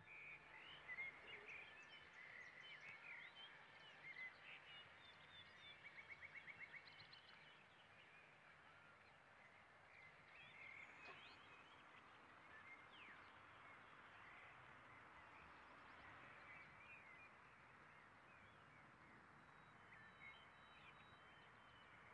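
Faint outdoor ambience with small birds chirping, busiest in the first seven seconds, including a quick trill of about eight rapid notes around six seconds in.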